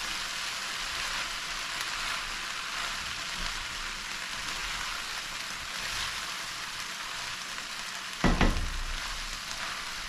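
Okra and saltfish frying in a pan, a steady sizzle as the pieces are stirred with a spatula. A brief thump a little past eight seconds in.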